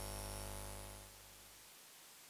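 The final held chord of a recorded choral song fades out over about a second, then near silence.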